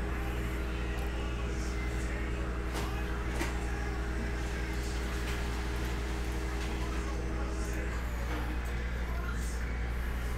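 Steady low electrical hum under room noise, with a few faint clicks; a higher steady tone over the hum stops about eight seconds in.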